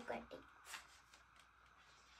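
A child's voice trails off, then a black marker makes faint, brief scratching strokes as it writes on a cardboard box panel.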